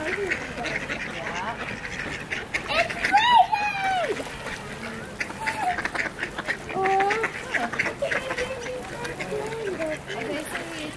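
A flock of mallards quacking on the water, many overlapping quacks. A louder call that bends up and down in pitch comes about three seconds in.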